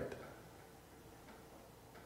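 The end of a man's spoken word fading out just after the start, then near silence: quiet room tone with a faint steady hum.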